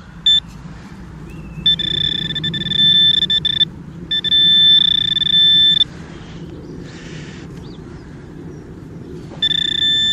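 Handheld metal-detecting pinpointer probe giving a steady high buzzing tone in two stretches of about two seconds each, then again briefly near the end, as it picks up a metal target in the loose soil of the dug hole. Faint rustling of soil and grass between the tones.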